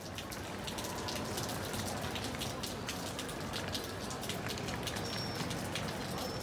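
Steady rain falling, an even wash of noise with many small, sharp raindrop ticks close by.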